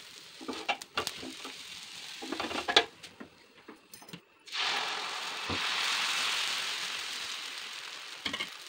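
A spatula scraping and clicking on a dosa tawa, then, about halfway, a sudden loud sizzling hiss from the hot tawa that slowly fades.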